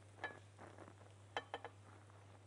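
Faint clicks and scrapes of kitchen utensils against a glass bowl as cooked minced meat is scooped out onto pasta: one light click about a quarter second in and a quick group of three around a second and a half. A low steady hum runs underneath.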